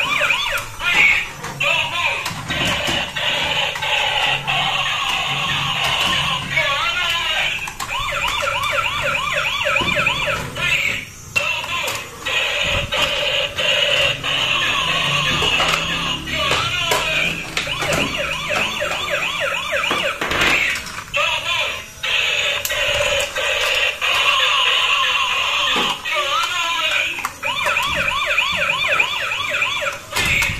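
Battery-powered transforming robot car toys playing their electronic siren wails and tinny music through small speakers, with wavering, warbling pitch.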